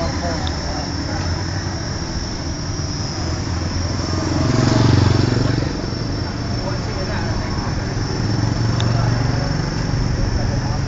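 Street traffic ambience: a steady low hum of vehicles, with one motor vehicle passing close by and loudest about five seconds in, and people's voices in the background.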